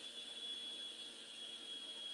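Quiet room tone in a pause between speech: a faint steady hiss with a thin high-pitched whine.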